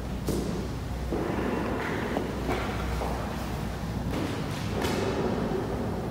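Handling noise on a handheld phone's microphone: a steady low rumble with a few soft thumps, one just after the start and one near five seconds in.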